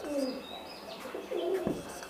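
A pigeon cooing faintly in the background: a couple of low, soft coos. A marker is writing on a whiteboard at the same time.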